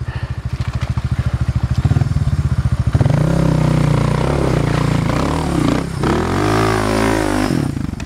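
Suzuki dirt bike engine putting steadily at low revs for about three seconds, then revving hard up and down under load as the bike climbs a steep creek bank. The revs sag near six seconds, rise again, and drop off just before the end.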